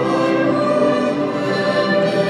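Choir singing held chords with string accompaniment, a sacred requiem setting.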